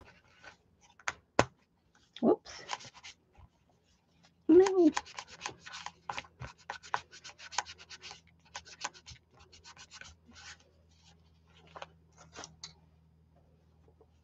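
Paper towel rubbed over a printed paper sheet, in quick runs of short scratchy strokes that are densest from about four seconds in until near the end. A short murmur of voice comes about four seconds in.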